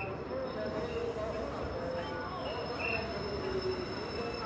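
JR DD51 diesel locomotive hauling a sleeper train slowly along a station platform: a steady engine and rolling noise, with short high squeaks now and then and a crowd talking.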